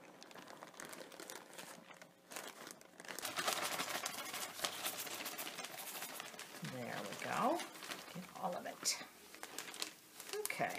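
Plastic zip-top bag crinkling and rustling as gypsum cement powder is shaken out of it into a plastic mixing bowl, the rustling growing louder about three seconds in. A short voice-like sound comes about seven seconds in.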